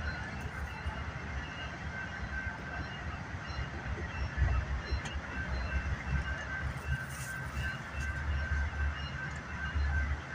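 A BNSF diesel locomotive's engine rumbling low as it rolls slowly past, with a grade-crossing bell ringing over it in steady repeated strikes.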